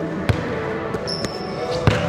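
A basketball bouncing twice on a hardwood gym floor, about a second and a half apart.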